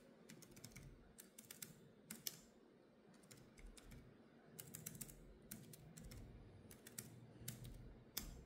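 Faint typing on a computer keyboard: irregular runs of light key clicks with short pauses between them.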